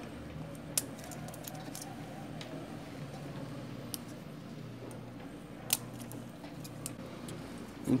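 Scattered small clicks and taps of a thin screwdriver tip against the hard plastic roller bar of an Epson L120 printer as the paper-feed rollers are pried out, over a low steady hum. The sharpest click comes about six seconds in.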